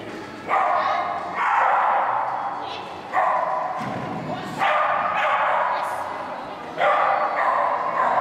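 Parson Russell terrier barking about five times, each bark trailing off in the echo of a large indoor hall.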